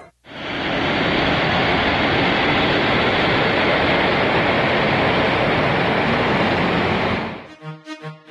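Jet airliner engines as the plane comes in low to land, a steady even rush of noise that fades out just before the end, where music with a steady beat begins.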